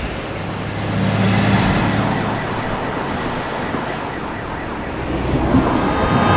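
City street ambience: a steady wash of traffic noise with a siren wailing.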